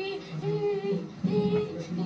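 A woman's high voice singing a chant-like line of short held notes, one after another, with lower voices beneath.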